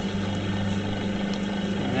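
Potter's wheel running with a steady motor hum as wet clay is centred under the hands.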